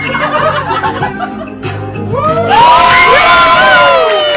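Music with sustained low notes and some scattered audience laughter; a little past halfway a louder wavering melody line comes in.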